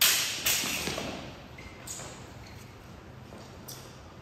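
Steel practice swords clashing and scraping along each other: a loud clash at the start, a second about half a second later, both fading out over about a second, then a couple of light taps.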